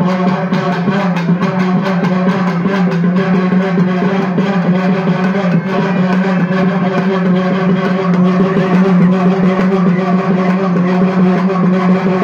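Live festival music: drums played in rapid, dense strokes over a steady, unbroken droning tone, going on without a break.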